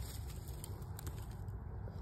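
Faint, steady low rumble of traffic on a nearby freeway.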